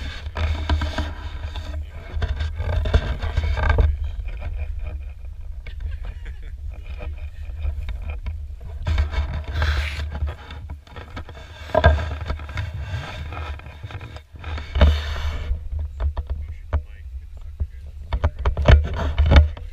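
Steady low rumble on an action camera's microphone, with irregular splashes, knocks and scrapes of someone wading through shallow water carrying a fish spear.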